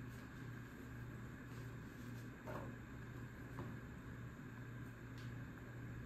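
Faint handling of a deck of cards being shuffled by hand, with a few soft clicks, over a steady low hum.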